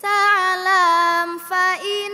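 A girl's solo voice chanting Arabic nadzm verse into a microphone, unaccompanied, with long held notes ornamented by small melodic turns. The voice starts suddenly and takes a short breath about one and a half seconds in.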